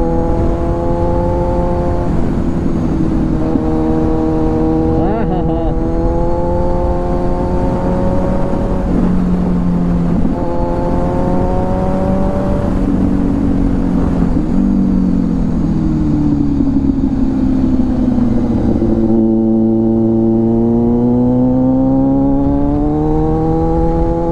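Kawasaki Z900's inline-four engine running under way on the road, its note rising and falling several times as the throttle is opened and eased, with a clear drop in pitch about halfway through and a slow rise again near the end. A steady rush of wind and road noise runs beneath it.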